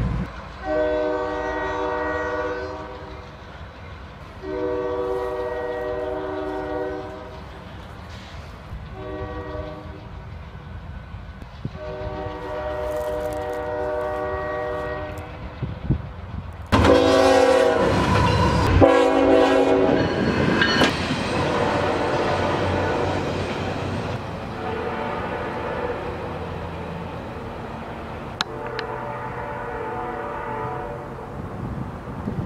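Nathan K3LA three-chime locomotive air horn sounding the grade-crossing signal: long, long, short, long. From about 17 s a second, louder locomotive horn gives two blasts and then a longer one, with the rumble of the passing train underneath.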